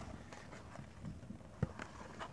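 Faint handling of a paper picture book: a few soft ticks and taps of card and paper as the book's flap is lifted, the loudest about a second and a half in.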